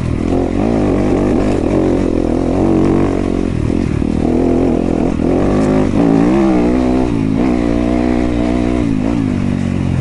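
Yamaha YZ250FX dirt bike's four-stroke single-cylinder engine running under a rider's throttle on a trail. Its pitch rises and falls repeatedly as the throttle is opened and closed.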